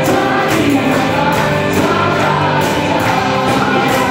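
Live worship music: a group of singers backed by a band with electric guitar and keyboard, singing over a steady beat.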